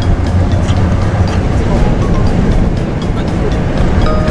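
Background music with a steady beat, laid over the low rumble of a moving car heard from inside the cabin.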